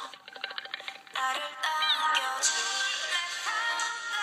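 Female K-pop group song playing: a sparse, quiet pulsing beat for about the first second, then sung vocal lines over the backing track.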